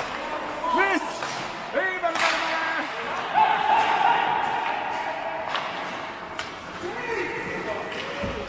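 Indoor ice hockey game: players shout short calls across the rink about one and two seconds in, with a longer held shout a little later and another near the end. Sharp clacks of sticks and puck on the ice and boards are scattered throughout.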